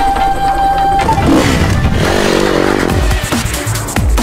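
Electronic dance music at full level, with a held high note in the first second and a rising and falling whine about two seconds in.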